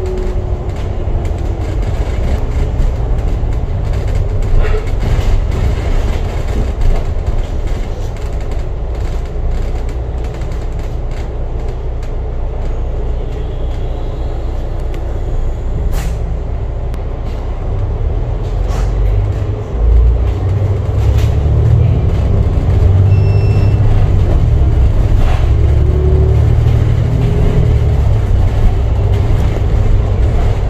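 Alexander Dennis Enviro500 double-deck bus heard from on board: a steady low engine and road rumble with occasional faint rattles and clicks. From about two-thirds of the way in the engine drone becomes markedly louder and heavier.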